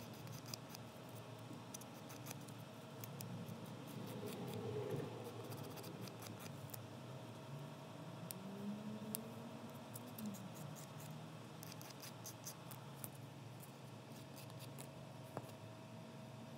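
Faint, irregular scratching of a small nail file against a plastic press-on nail tip as it is filed to fit.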